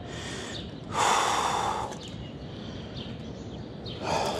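A man's breathing, close to the microphone: a faint breath at the start, then a heavier exhale about a second in that lasts under a second.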